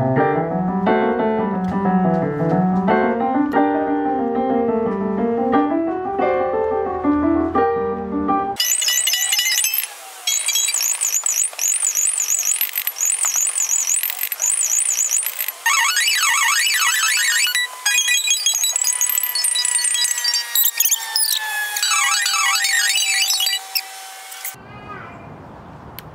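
Nord stage piano playing an étude through a speaker, with a bass line that rises and falls. About eight seconds in, the sound switches abruptly to a high-pitched, rapid jumble of notes and gliding tones with no low notes. It drops to a quieter stretch shortly before the end.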